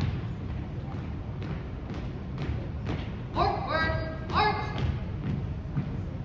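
Dull thuds of a drill team's boots on a gymnasium floor as the formation steps off into a march. About halfway through come three shouted, drawn-out drill commands.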